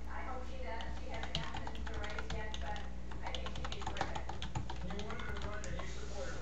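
Rapid clicking of typing on a computer keyboard, densest through the middle, with a muffled voice talking over it and a steady low hum underneath.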